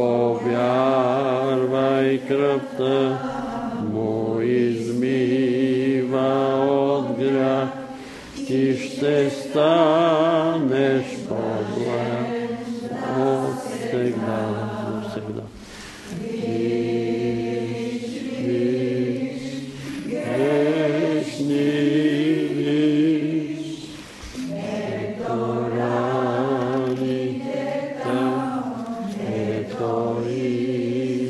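A church congregation singing a hymn together, several voices holding long notes with vibrato, in phrases of about eight seconds with short breaths between them.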